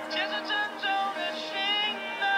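Recorded pop song playing over speakers: a sung melody with long held, gliding notes over backing music, with no drum hits standing out.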